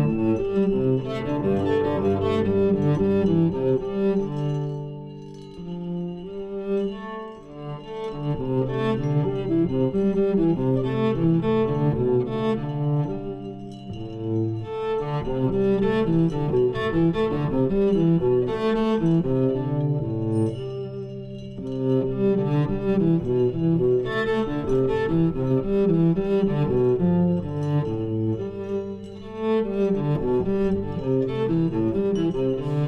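Live contemporary chamber music: a bowed cello over quickly repeated mallet-percussion notes, forming a dense, pulsing texture that thins briefly a few times.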